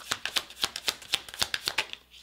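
Tarot deck being shuffled by hand: a quick, uneven run of soft card clicks and slaps, several a second.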